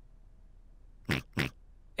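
Two short pig snorts from a cartoon piglet character, about a second in and again a moment later.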